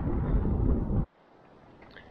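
Wind buffeting the microphone: a loud, low rumble that cuts off abruptly about a second in, leaving only a faint quiet background.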